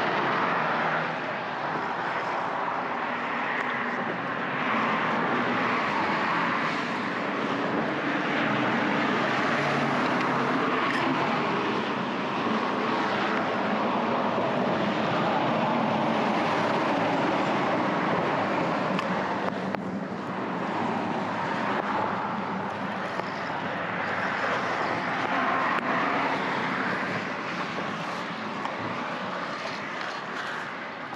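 Steady road traffic from the nearby highway bridge, a continuous rush of tyres and engines that rises and fades gently as vehicles pass.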